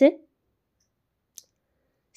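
One short, sharp click of metal knitting needles touching, about one and a half seconds in, against otherwise dead silence.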